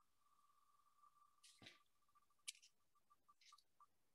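Very faint ticking of an online spinning name wheel: the ticks come so fast at first that they run together into a tone, then come further and further apart as the wheel slows down. A couple of faint clicks sound in the middle.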